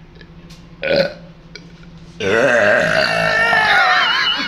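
A short cough about a second in, then a long, loud, drawn-out burp from a teenage boy that begins just after two seconds and wavers in pitch for over two seconds.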